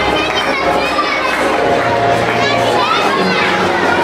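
A crowd of young children cheering and shouting together, many voices overlapping, with a high rising shout about two and a half seconds in.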